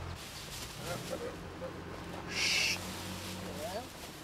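Bird calls over steady background noise, with a brief loud hiss about halfway through.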